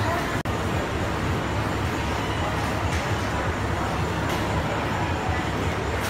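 Busy food court ambience: a steady low rumble with indistinct background chatter. The sound briefly cuts out about half a second in.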